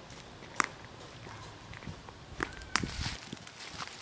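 Footsteps on dry fallen leaves and grass, with a few sharp crunches at irregular intervals.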